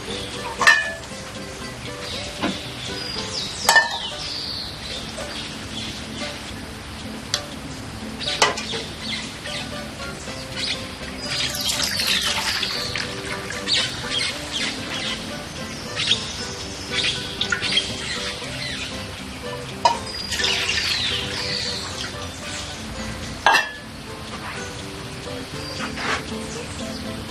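Soft background music with birds chirping now and then, and a few sharp knocks and clatters of dishes being handled.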